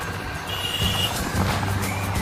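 Motorcycle engine running while under way, with road and wind noise, and a brief steady high tone about half a second in.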